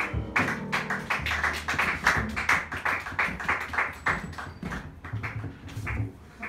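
Small jazz combo playing live: an archtop guitar hits short, sharp chords about four times a second over an upright bass, as a piano chord dies away at the start.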